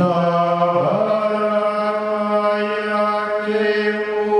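A man's voice chanting a blessing in long held notes over a microphone, the pitch stepping up about a second in.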